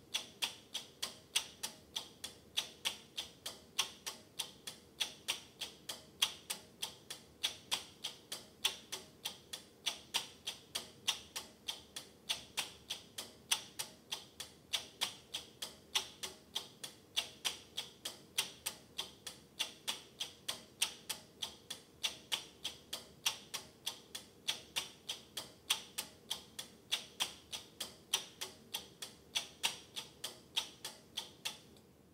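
Relays of a homebuilt relay computer clicking in a steady rhythm, about three clicks a second, as the clock steps the machine through its program instructions.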